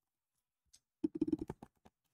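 Computer keyboard keys being typed: a quick run of about ten clicks starting about a second in, after a second of near silence.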